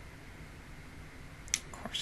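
Steady hiss of a quiet room through a close microphone, then about one and a half seconds in a single sharp mouth click, a lip smack as a woman starts to speak, with her voice beginning near the end.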